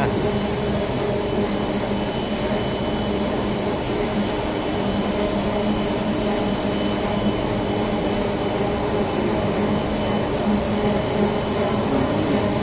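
Electro-galvanizing wire production line running: a steady mechanical hum from its drive motors and wire take-up spools, with several steady tones in it.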